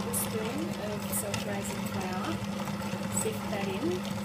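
Electric stand mixer running on slow speed with a steady motor hum, its twin beaters churning a thin, milky egg-yolk and sugar batter in a glass bowl.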